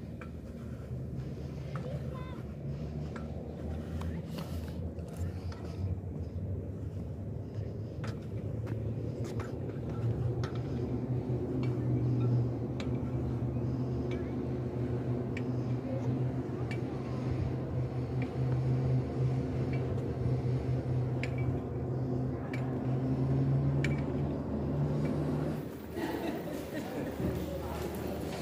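A steady low mechanical hum that grows louder about halfway through, with scattered light clicks.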